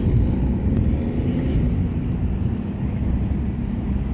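Steady low rumble of outdoor background noise picked up by a handheld phone's microphone.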